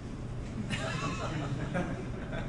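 A faint voice off the microphone, wavering in pitch, starting under a second in over a steady low room hum.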